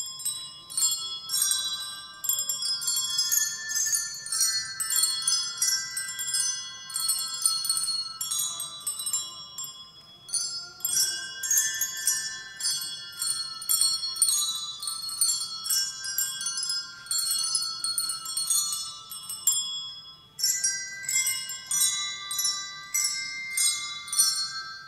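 A group of colour-coded handbells played in turn as a melody: a steady run of clear ringing notes, several a second, each overlapping the last as it fades. The sound cuts in suddenly at the start.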